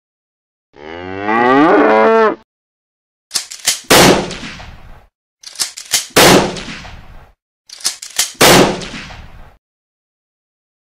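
A cartoon cow gives one long moo. It is followed by three bursts of sharp, gunshot-like bangs about two seconds apart: each burst is a few quick cracks and then one loud bang that rings out.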